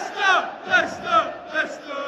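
Football crowd in a stadium stand chanting, a run of short loud shouts about two or three a second, each falling in pitch.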